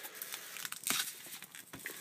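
Thin clear plastic wrap film crinkling and crackling softly as fingers pick at it and peel it off a cardboard box, with a few small clicks.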